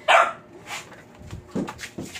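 A dog barking: one loud, sharp bark right at the start and a fainter, lower bark about a second and a half later.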